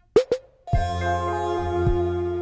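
Electronic music played live on hardware synthesizers and a Vermona DRM1 mkIII drum machine. Two quick percussive blips drop in pitch just after the start; about half a second later a sustained synth chord with deep bass comes in, and a kick drum hits near the end.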